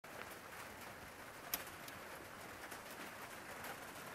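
Faint room tone with a pigeon cooing in the background, and one sharp click about a second and a half in.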